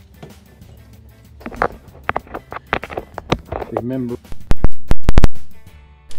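Soft background music, then a quick run of loud, sharp clicks and knocks about four and a half seconds in, from a bacon-bits container being handled close to the microphone.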